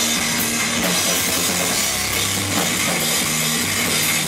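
Rock band playing live and loud: electric guitar, electric bass and drum kit together, with no let-up.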